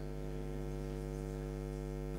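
Steady electrical mains hum: one unchanging low hum with a stack of evenly spaced overtones.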